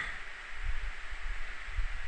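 Steady microphone hiss with a few faint low thumps, no speech.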